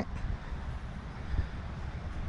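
Low, uneven outdoor rumble with no distinct events.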